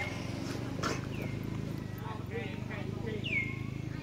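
Monkey calls: three high whistling calls, each dropping in pitch and then levelling off, with shorter, lower calls between them. A single sharp click comes about a second in, over a steady low hum.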